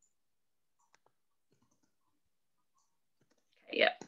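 Faint computer keyboard and mouse clicks, the clearest about a second in, over near silence. Near the end comes one short, louder voice sound.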